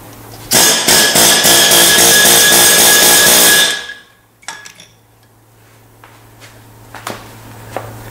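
Pneumatic rivet gun rapidly hammering a solid steel round-head rivet against an anvil to form its head. It is a loud burst of about three seconds that starts half a second in and cuts off suddenly, followed by a few faint metal clicks.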